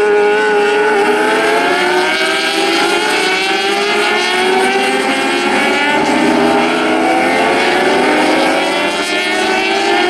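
A pack of 600cc racing motorcycles going through a corner and accelerating away. Several engine notes overlap, each rising in pitch as the bikes pull out of the bend.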